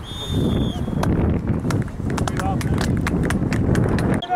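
Wind buffeting the camera microphone outdoors as a low, continuous rumble. A high, steady whistle-like tone sounds for most of the first second, and a run of sharp clicks follows through the middle.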